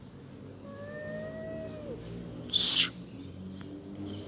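Cat standoff: a cat gives one long, low yowl about a second in, its pitch dropping as it ends, then a short, loud hiss near three seconds, the warning sounds of one cat threatening another.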